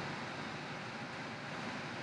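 Steady background hiss and hum of room tone, with no distinct events.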